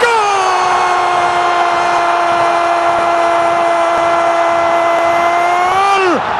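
Football TV commentator's long, held goal cry: one shouted note sustained for about six seconds, dipping in pitch at the start and lifting slightly as it ends. A cheering stadium crowd is underneath.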